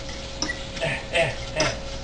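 A utensil scraping and knocking against a stainless steel saucepan as browning sausage is stirred: four short strokes, a little under half a second apart.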